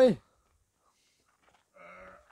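A man's drawn-out, wavering "haaai" cry, low and moan-like, cutting off just after the start. Then a pause, and near the end a faint raspy, breathy sound.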